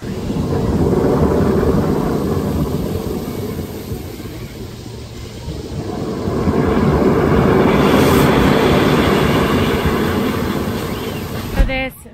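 Fire Rock Geyser, a man-made geyser, erupting: a loud, steady rushing of spraying water that swells, eases a little partway through, then swells again. There is a short thump just before it cuts off.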